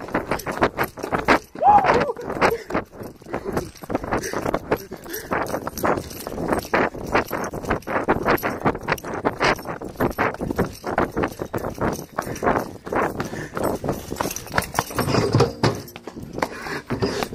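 Running footsteps on concrete with a handheld phone jostling, a steady patter of about three footfalls a second.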